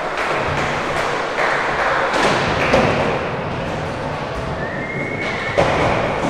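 Skateboard wheels rolling over the skatepark floor, with two sharp board impacts, one a little under three seconds in and another near the end.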